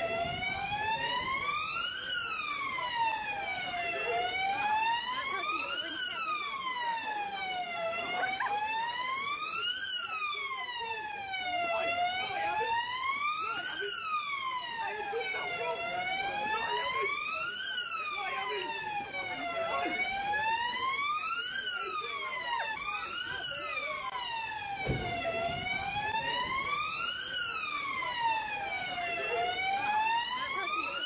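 Emergency-vehicle siren wailing, its pitch rising and falling slowly in an even cycle about every four seconds.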